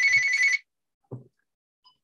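An electronic telephone ring: a high, warbling two-note tone over the tail of a spoken word, cutting off about half a second in. Then quiet, with one faint brief sound about a second in.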